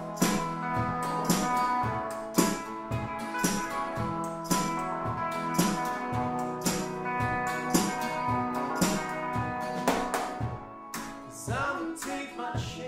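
A small live rock band playing: electric and acoustic guitars over a drum kit keeping a steady beat. The drums drop back briefly near the end.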